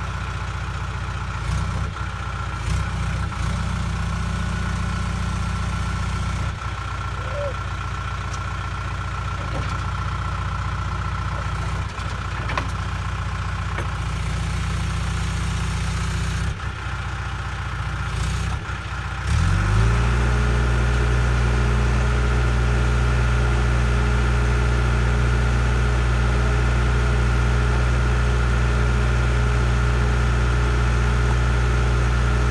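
John Deere 310G backhoe's four-cylinder diesel engine idling steadily, with a few brief knocks. About two-thirds of the way in the throttle is raised, and the engine speeds up and holds a louder, higher steady note.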